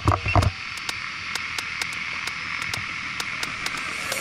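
Steady rushing hiss of wind on the camera microphone, with a brief low rumble at the start and a faint regular ticking.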